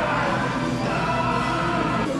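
Background music with sustained, held chords and choir-like singing voices.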